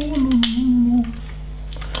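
A single sharp plastic click of LEGO bricks snapping together about half a second in, over a short low hum in the first second.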